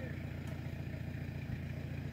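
Pickup truck engine idling steadily: a low, even hum.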